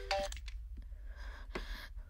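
Mobile phone keypad tones as a number is dialled: a short beep right at the start, then a faint hiss about the middle.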